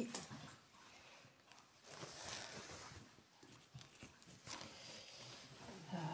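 Faint rustling of a rolled cross-stitch canvas being unrolled and handled, with a sharp click at the start and soft swells of fabric noise in between.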